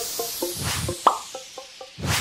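Logo intro jingle: a whoosh fading away under a run of short plucked notes at about five a second, with a quick upward blip about halfway through.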